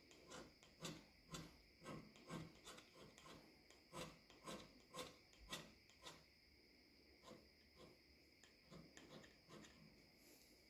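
Faint strokes of a carbide hand scraper on the cast iron of a lathe compound slide, about two short scrapes a second, breaking up the high spots shown by the bluing. After about six seconds the strokes come further apart and weaker.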